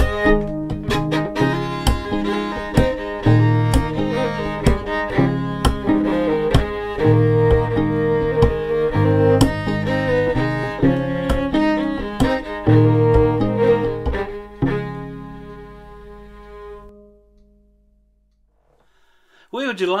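Instrumental close of a folk string arrangement: a bowed fiddle over a plucked fiddle, with sharp taps of body percussion on the chest keeping time. It fades out about three-quarters of the way through and ends in near silence.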